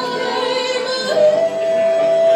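Music with a female voice singing long held notes; one note ends and a new one slides up into place about a second in.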